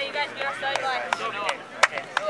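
Hands slapping together as two youth soccer teams file past each other in a post-game handshake line: about four sharp slaps at uneven intervals. The loudest comes near the end.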